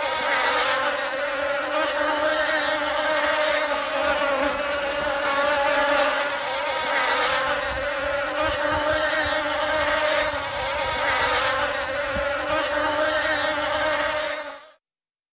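A steady, high-pitched buzzing drone that wavers slightly in loudness but holds one pitch.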